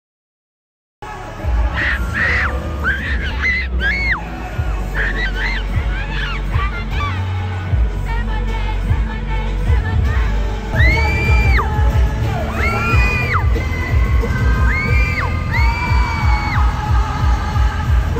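Live K-pop concert recorded on a phone close to the stage: loud pop music with a heavy bass beat and singing, starting after about a second of silence.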